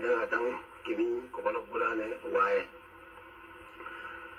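Speech only: a person's voice speaking in short phrases, falling quiet a little under three seconds in.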